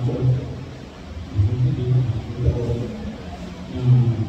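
A man's voice preaching, in short phrases with a brief pause about a second in; the words are not clear.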